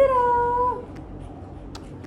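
Small white long-haired dog giving a short howl: one rising note held for under a second, then falling away.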